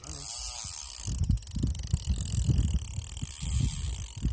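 Fishing reel's mechanism clicking in a quick ratcheting run as the line is worked, with dull handling knocks close to the phone mic.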